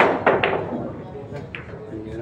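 A pool shot: the cue tip strikes the cue ball with a sharp click, followed by two quick clacks of the balls colliding, and another fainter click about a second and a half in.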